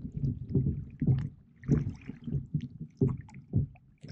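Rowing an inflatable boat: water sloshing and gurgling against the inflatable hull and around the oar blades in uneven surges, with small knocks and clicks.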